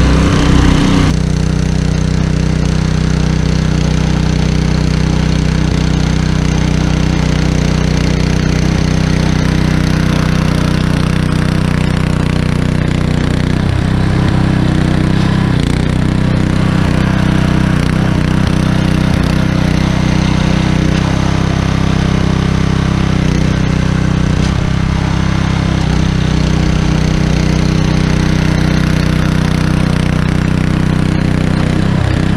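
Earthquake Victory rear-tine tiller's Kohler engine running steadily under load as its tines churn garden soil. It is a little louder in the first second, then changes abruptly and holds an even pitch.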